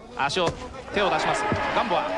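Men's voices talking and calling out at a live boxing match, with a couple of dull thuds among them.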